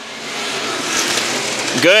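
A pack of Street Stock race cars accelerating past together just after the green flag, their engines blending into one noise that swells over the first second and then holds.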